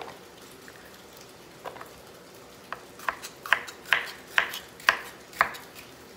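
Kitchen knife slicing bitter melon on a bamboo cutting board: a few scattered knocks, then steady cuts about two a second from halfway in.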